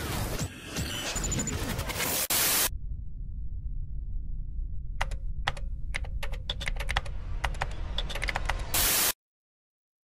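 A burst of crackling digital static for the first two and a half seconds. Then, after a pause over a low hum, a computer-keyboard typing sound effect: irregular single keystroke clicks. It ends in a short blast of static and cuts off suddenly to silence.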